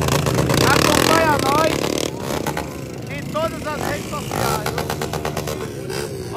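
Motorcycle engines running and revving, loudest in the first two seconds, with people's voices over them.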